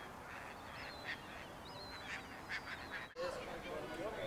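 Birds calling: a run of short, high chirps and gliding calls over a steady low background hiss, then people's voices near the end.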